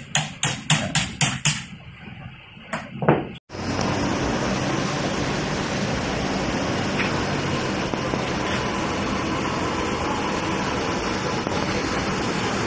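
A quick run of about six sharp knocks on the air-conditioner unit, then, after a cut, the steady hiss of a handheld gas brazing torch. Its flame is heating the copper refrigerant pipe at the compressor.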